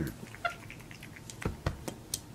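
A capuchin monkey gives one short, high squeak, followed by three quick, light taps or clicks near the end.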